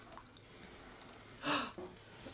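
Quiet room, then about one and a half seconds in, one short breathy laugh from a person.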